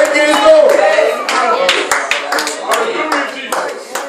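Steady rhythmic hand clapping, about three claps a second, under a man's voice speaking and calling out through a microphone, with a long held note in the first second.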